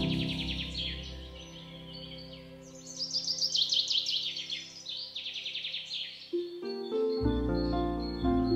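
Background music of held chords, with bird chirps and trills laid over it, thickest in the middle. The bass drops out for a moment and comes back in near the end.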